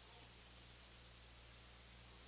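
Near silence: steady hiss and a low electrical hum from the recording, with no other sound.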